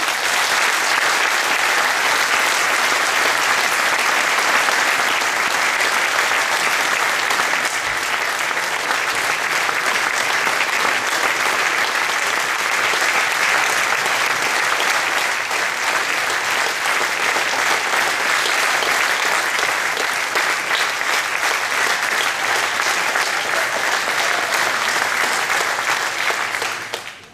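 Large audience applauding: dense, steady clapping that holds at an even level throughout.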